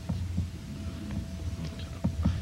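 Steady low electrical hum with a faint thin high tone over it, and a few soft low knocks.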